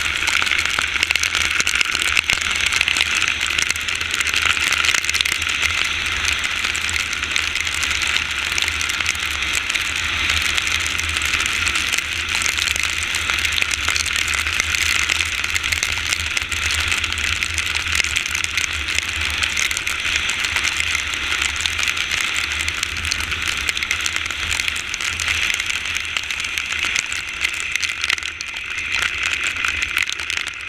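Steady rushing noise of wind and rain, with tyres on wet asphalt, heard from a motorcycle riding in the rain, and a low rumble underneath. It eases slightly near the end.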